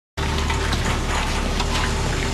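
Steady rushing noise over a low hum, starting just after the opening and holding an even level.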